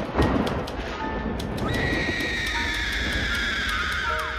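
Dramatic intro jingle with sound effects: a thud at the start, then a long, high, wailing cry that slowly falls in pitch over the music.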